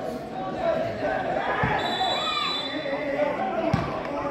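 Players and spectators shouting at an outdoor football match, with two thuds of the football, one about one and a half seconds in and one near the end. A brief high, steady whistle sounds in the middle.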